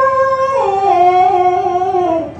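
A woman's voice chanting Khmer smot, a mourning lament, into a microphone. She holds a long wailing note that steps down in pitch about half a second in, holds, and slides a little lower near the end.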